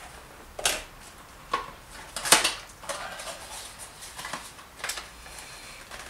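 Small cardboard box of a cheap bicycle speed computer being handled and opened: a handful of sharp, scattered clicks and taps from the box and packaging, the loudest a little over two seconds in.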